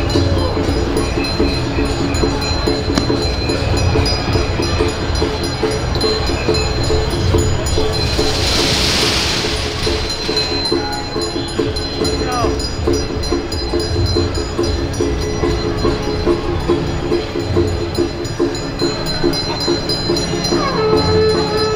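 Steady horn-like tones held over low drum beats, as from a temple festival band, with a hissing burst about eight seconds in.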